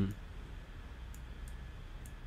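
A few faint clicks in the second half over a steady low hum, after the tail of a murmured 'hmm' right at the start.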